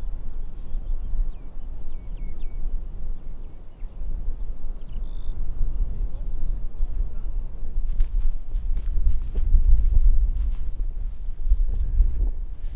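Wind buffeting the microphone with a low, gusting rumble, with a few faint bird chirps about a second in. From about eight seconds in come crackling rustles of footsteps pushing through dry dune grass.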